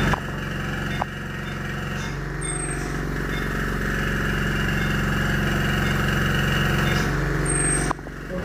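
A steady mechanical hum made of several held tones, from electrical equipment running in the room. Two short, high-pitched tones sound about five seconds apart.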